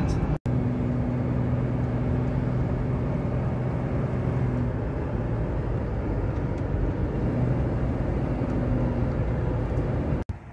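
Car being driven, heard from inside the cabin: a steady engine hum under tyre and road noise. There is a brief dropout to silence just under half a second in.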